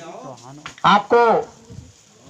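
A man's voice over a public-address loudspeaker: one short phrase about a second in, with a faint crackling hiss in the pauses either side.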